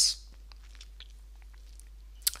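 A man's voice ending a word, then a pause of low room tone with a steady low hum and a few faint, short clicks.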